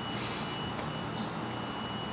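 Steady background noise of the cacophony from outside, with a faint steady high-pitched tone.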